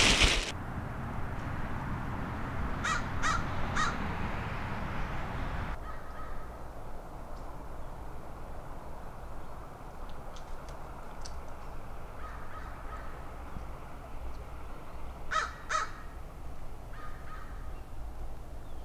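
A plastic trash bag rustles briefly at the very start. Then a bird calls outdoors, three short harsh calls in quick succession about three seconds in and two more about fifteen seconds in, over a steady low outdoor hiss.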